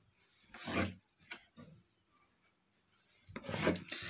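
Tailor's chalk scraped across cloth along a ruler, marking cutting lines: a few short scratchy strokes, the longest about half a second in and another near the end.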